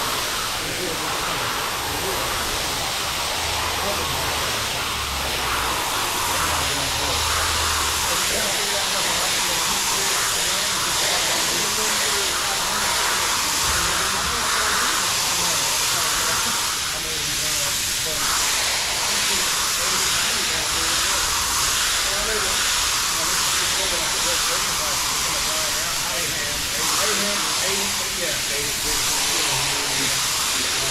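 High-pressure spray wand jetting water onto a wet wool rug, a steady hiss that runs on without break.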